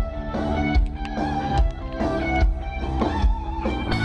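Live rock band playing through the venue's sound system, led by electric guitar over a steady drum beat, heard from within the audience.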